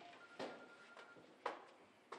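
A few faint, sharp knocks and clicks in a small room, the loudest about one and a half seconds in. A faint, thin, high steady tone runs through the first half.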